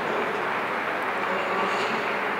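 Steady indoor arena ambience: an even rushing noise with no ball strikes or voices.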